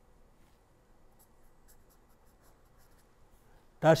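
A pen writing on paper: a run of faint, short scratching strokes as a word is written out.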